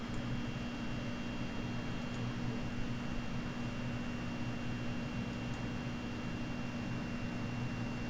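Steady background hiss with a constant low hum and a thin high whine: room and electrical noise. A few faint clicks come about two seconds in and again about five seconds in.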